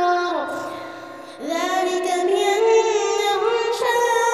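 Background music: a high voice singing held, wavering notes of a Carnatic-style song. The sung phrase falls away about half a second in, and the singing comes back about a second and a half in.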